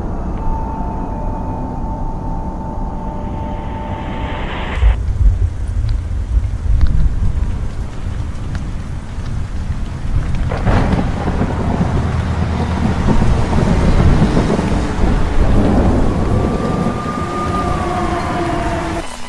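Thunderstorm: rolling thunder over steady rain, with a sharp thunderclap about ten seconds in. A steady high tone sounds over it for the first four seconds, and another tone slides downward near the end.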